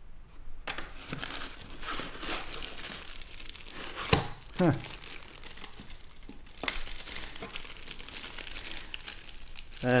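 Plastic packaging crinkling and rustling as hands work small items out of a cardboard box, with two sharp clicks partway through.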